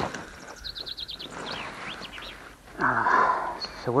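A small wild bird chirping: a quick run of high chirps about a second in, followed by a few short sliding notes. A brief noisy rustle comes just before speech near the end.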